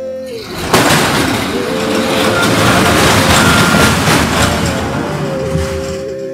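A black steel gate being dragged open, with a loud scraping rumble that starts about half a second in and fades near the end, over background music with a held sung note.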